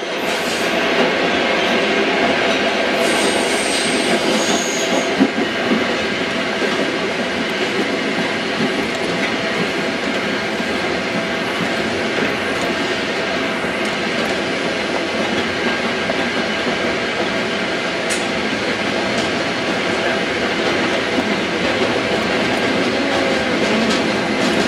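New York City subway train running, heard from inside the car, with a steady rumble and rattle and brief high wheel squeals about three and four and a half seconds in.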